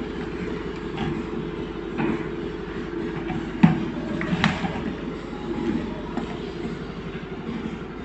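A barrel Bluetooth speaker being handled by hand: a few sharp clicks and knocks, the loudest about three and a half seconds in and a small cluster just after four seconds, over a steady low hum.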